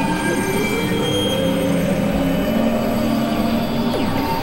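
Experimental synthesizer drone-and-noise music: a dense, grating wash of noise under several steady held tones, with one tone sliding slowly upward over the first two seconds. It keeps a steady level throughout.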